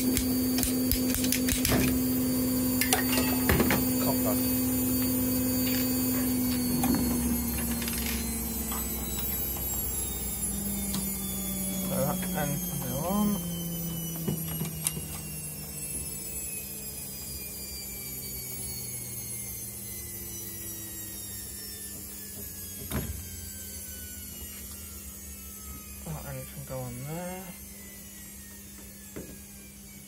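A washing machine winding down from a spin: its motor whine falls steadily in pitch and fades away. Scattered clicks and knocks of plastic pipe and fittings being handled.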